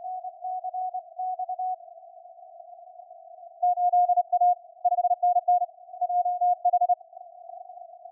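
Morse code (CW) on the 20 m amateur band through a SunSDR2 DX transceiver: a single steady beep keyed in dots and dashes over faint band hiss. The keying is weaker at first, then a louder station sends from about halfway.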